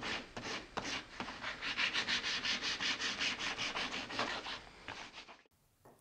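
Edge of a veneered marquetry panel held against a running belt sander, a rasping sanding noise that swells and fades about four or five times a second. It cuts off suddenly near the end.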